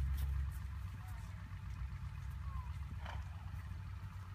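Wind rumbling on the microphone, strongest in the first half second. A few faint, short sounds come over it, one about three seconds in.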